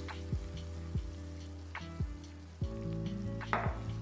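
Tomato sauce sizzling in a frying pan while a spatula stirs it, with a few sharp clicks and a short scrape about three and a half seconds in. Background music with a soft beat plays underneath.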